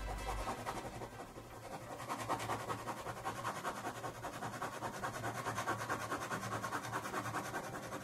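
Ballpoint pen hatching on paper: quick, even back-and-forth scratching strokes, several a second, steady through most of the stretch.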